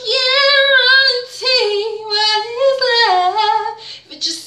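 A woman singing solo and unaccompanied, holding long high notes that waver and slide between pitches, with a dip in pitch about three seconds in and no clear words.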